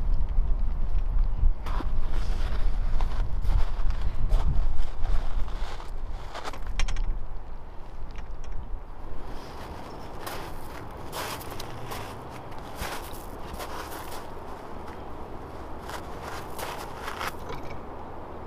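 Wind buffeting the microphone for the first six seconds or so, then irregular crunching footsteps on wood-chip ground.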